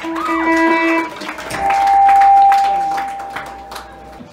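Live rock band playing, led by an electric guitar: bending notes at first, then one long held note that swells and fades. Scattered drum hits sound under it, and the heavy bass from just before has dropped away.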